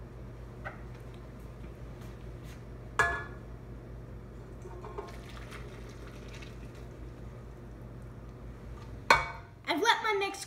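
Warm sugar-and-gelatin syrup poured from a pot into a stainless steel stand-mixer bowl, over a steady low hum. The pot clanks once about three seconds in, and there is a sharp clatter near the end.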